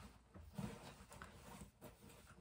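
Near silence: room tone, with a few faint, brief handling noises as items are taken out of a bag.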